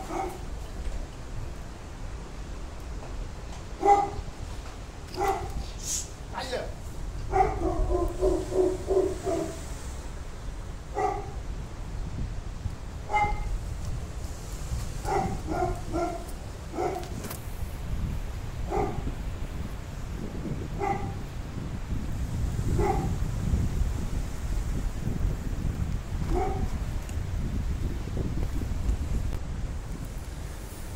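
A dog barking, about a dozen short barks spaced a second or two apart, with a quick run of barks about eight seconds in, over a low rumble on the microphone.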